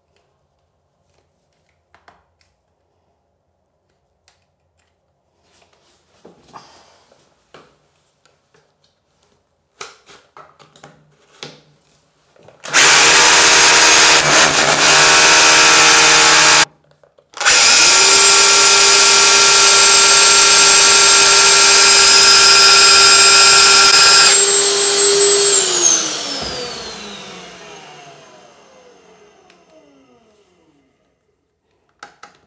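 Rotary hammer drill boring into a tiled concrete wall in hammer mode. After a few faint handling clicks it runs flat out for about four seconds, stops briefly, then runs again for about seven seconds. When released, its motor winds down with a falling whine.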